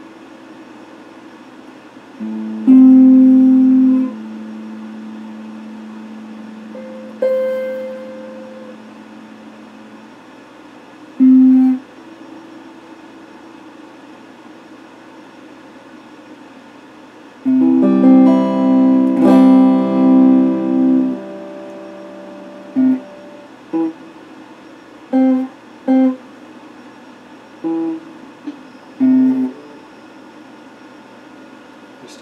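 Electric guitar played slowly and unaccompanied: single notes left to ring for several seconds, a quick flurry of notes about eighteen seconds in, then short, separate plucked notes near the end, over a faint steady hum.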